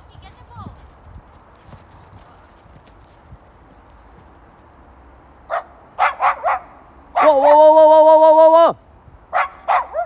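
Dogs barking: a quiet stretch, then about four quick barks, one long steady-pitched call of about a second and a half, and two more barks near the end.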